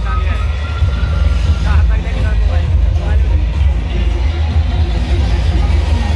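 Loud, bass-heavy DJ music played through a large outdoor sound system, with a deep, constant bass line and a voice over it.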